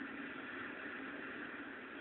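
Faint steady hiss with no distinct events: the background noise of an old television soundtrack during a pause in the dialogue.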